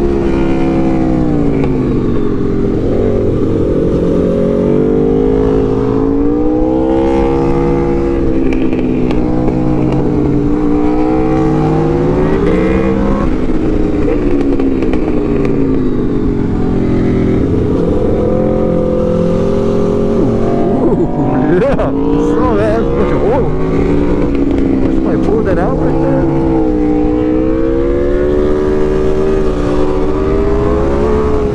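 Aprilia RSV4 Factory's V4 engine pulling through a run of bends, its pitch rising and falling every few seconds as the throttle is rolled on and off.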